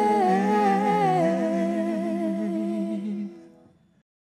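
A voice humming the closing held notes of a slow song over a steady low accompaniment, stepping down in pitch twice, then fading out after about three seconds.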